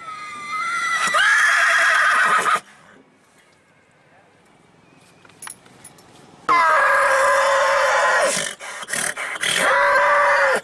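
Horse whinnying: a long call of about two and a half seconds at the start, a second long call from about six and a half seconds in, and a shorter one near the end.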